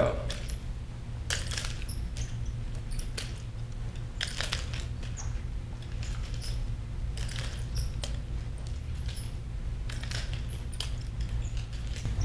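Scattered faint clicks and light rattles of a nunchaku's sticks and chain being handled, over a steady low hum.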